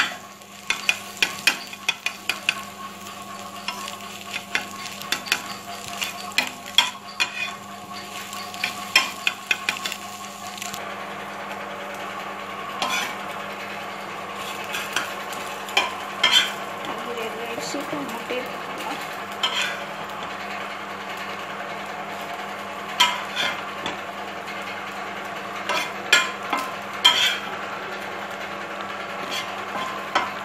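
A spatula scraping and tapping quickly on a dosa griddle as egg is scrambled, with many sharp clicks. About eleven seconds in the sound changes to a steady sizzle of noodles frying in a pan, with occasional spatula knocks against the pan.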